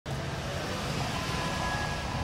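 Steady outdoor street background noise with a heavy low rumble, recorded on a low-quality microphone with the bass boosted.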